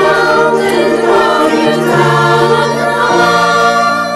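Women's choir, mixed from separately recorded home tracks, singing held notes in harmony over a low sustained bass line. The bass steps down about two seconds in and back up about a second later.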